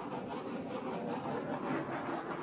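Handheld torch flame hissing steadily as it is swept over wet acrylic paint to pop air bubbles.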